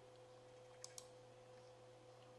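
Near silence with a faint steady hum, and two faint short clicks close together a little under a second in.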